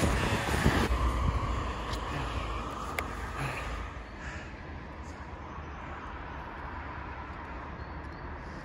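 Steady street traffic noise, a low rumble with a hiss over it. It is louder in the first second and settles lower about four seconds in.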